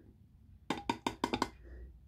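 A quick run of about six light taps or clicks in under a second, from the upturned metal tuna tin being handled where it sits on the canvas.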